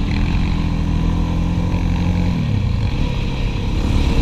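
Sport quad (ATV) engine running under way, heard from the rider's own machine. Its pitch holds steady, then drops a little about two and a half seconds in.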